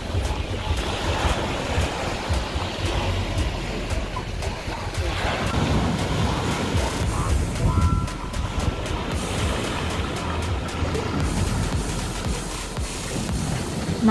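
Sea waves breaking and washing over rocks and pebbles, with wind rumbling on the microphone and music underneath.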